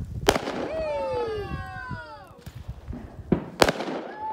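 Fireworks going off: a sharp bang a moment in and two more close together near the end. Between the first bang and the last two, a long falling tone sounds for about a second and a half.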